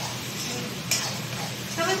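Poha frying in a steel pan on a gas stove, sizzling steadily as it is stirred with a metal ladle. There is one sharp clink of the ladle against the pan about a second in.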